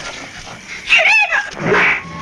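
A short, loud cry with a strongly wavering pitch about a second in, followed by a second, harsher and noisier cry near the end.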